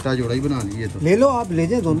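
Domestic pigeons cooing, with a man's voice talking over them.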